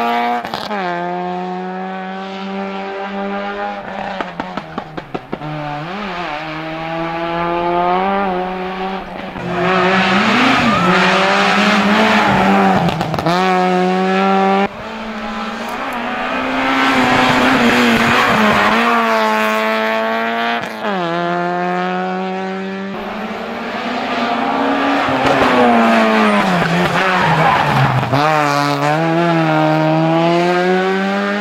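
Peugeot 106 rally car's engine revving hard at full throttle up a hillclimb. The pitch climbs again and again and drops back at each gear change or lift. A run of sharp crackles comes about four to five seconds in as the revs fall.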